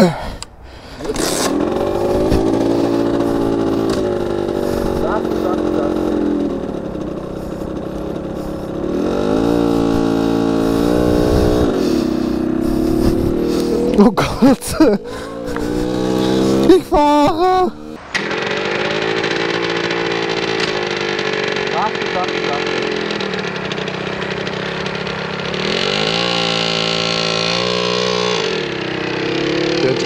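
RIJU MRT 50 manual-shift 50cc moped engine, ridden slowly in first gear, its pitch rising and falling again and again. Irregular knocks and choppy noise come a little past the middle.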